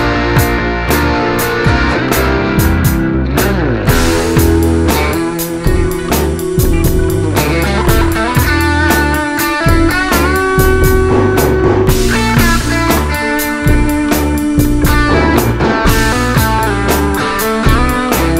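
Electric guitar played through a Boss GT-1000's Fender Deluxe amp model, lead lines with string bends over a looped backing with bass and a steady drum beat.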